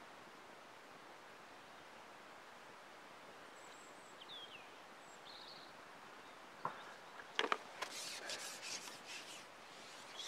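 Quiet lakeside outdoor ambience with a few faint, short bird chirps. About two-thirds of the way in come a few sharp knocks, then rustling, as the angler moves on his seat box and lifts the carbon fishing pole.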